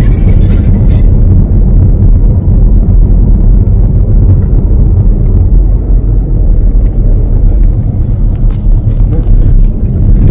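Steady low rumble of a car driving at motorway speed, heard from inside the cabin: engine and tyre road noise.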